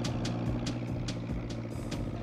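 Bus engine running: a steady low drone with a regular clatter about four times a second, easing slightly in level.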